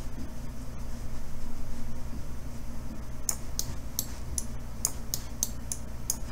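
A run of about a dozen quick, light clicks from the computer's keyboard and mouse, starting about halfway through, over a faint steady electrical hum.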